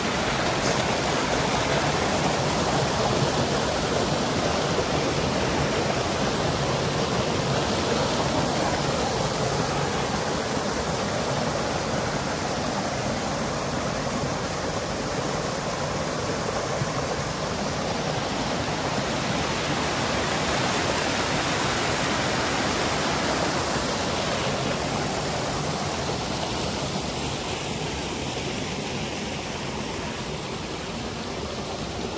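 Spring water from the Kikusui spring rushing over rocks in a small cascade, a steady splashing flow that grows a little quieter in the last few seconds.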